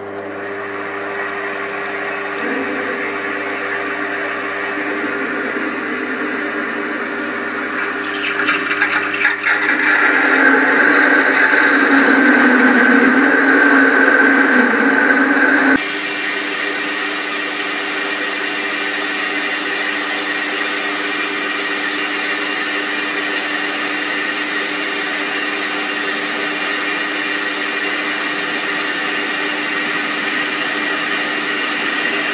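Small metal lathe (TL250V) running with a 13 mm drill bit cutting into a spinning aluminium block, the cutting noise building and rattling about eight seconds in. About halfway the sound changes suddenly to the lathe taking a cut with a tool bit on the spinning aluminium, with a steady high whine over the motor.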